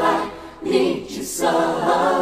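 Female vocals in a 1990s Cantopop ballad singing long held notes. One note breaks off about half a second in, a short note follows, and another long note starts just before the end.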